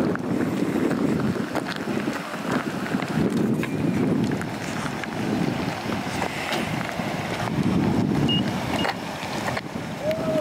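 Wind buffeting the microphone in gusts, a rough low rumble that swells and fades every second or two.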